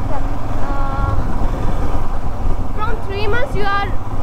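Motorcycle on the move: a steady low rumble of engine and wind noise, with faint voices talking over it about a second in and again near the end.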